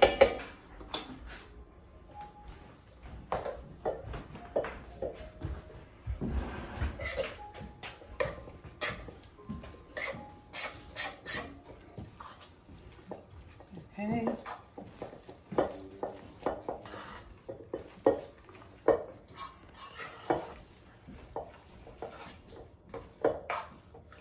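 Metal spoon stirring a thick ham salad in a stainless steel mixing bowl, with repeated clinks and scrapes of the spoon against the bowl.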